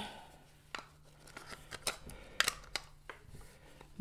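Sharp plastic clicks and taps from a small battery-powered ladybug desk vacuum being handled as its snap-on top is fitted back over the batteries, several separate clicks spread over a few seconds.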